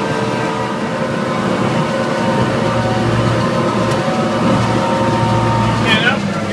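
A RIB running at speed: its engine runs steadily under a constant rush of water and wind, heard from under the boat's canopy.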